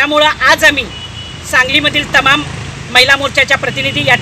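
A woman speaking in Marathi to a news camera, with a low rumble of traffic underneath.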